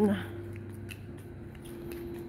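Quiet street ambience: a steady low hum with a few faint clicks. A voice trails off just at the start.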